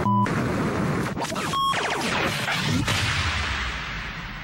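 Whooshing sound effects from an animated TV title sequence: a dense rush of noise with a short beep at the start and another about a point of one and a half seconds in, a few sweeping glides, and the rush slowly fading toward the end.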